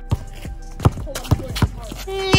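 Basketball dribbled on a concrete driveway: about four sharp bounces, unevenly spaced, with faint background music underneath.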